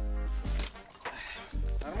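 Background music with a deep, steady bass and held notes; a man's voice says a short word near the end.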